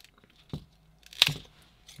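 Scissors cutting through a stiff nylon belt strap with a rigid inner core: a faint snip about half a second in, then one sharp snip a little past a second in as the blades close through the strap.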